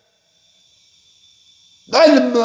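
Near silence in a pause between sentences, then a man's voice starts again near the end.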